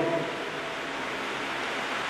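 Steady, even hiss of a large hall's room noise in a pause between spoken sentences, as the last word fades over the first half second.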